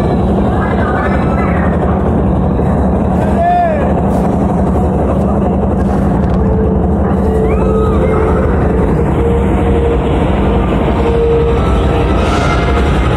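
Loud, steady rumble and low hum of a theme-park flume ride vehicle and its machinery, with people's voices over it. A steady higher tone joins in about six seconds in and stops shortly before the end.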